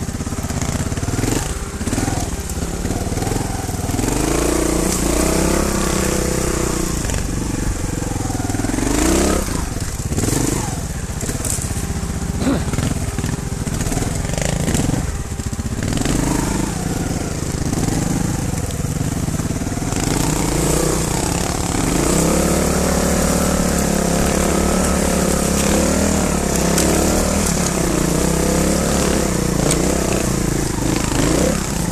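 Trial motorcycle engine revving up and down in repeated bursts under load while climbing a steep slope.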